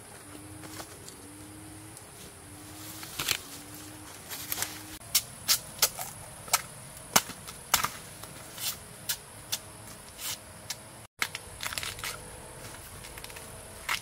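Sharp snaps and cracks, about one or two a second from a few seconds in, of fresh bamboo shoots being cut with a knife and their husks split and peeled off by hand.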